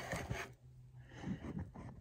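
Faint rustling and soft bumps of a phone being handled and set in place on a table.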